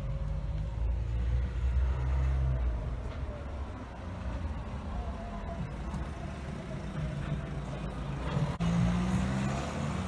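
A motor vehicle's engine running close by, a steady low drone with a faint whine that slides up and falls back; the engine note shifts higher near the end.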